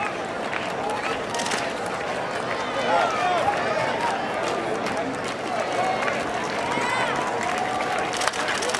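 Baseball crowd in the stands: a steady murmur of many overlapping voices, with scattered shouts rising above it.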